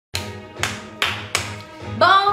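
Four sharp hand claps, coming a little faster each time, over background music with steady held tones.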